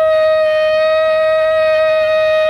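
Shofar (ram's horn) blown in one long, steady note, rich in overtones.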